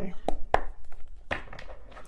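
Tarot cards being handled and laid down on a table, heard as several sharp taps and clicks.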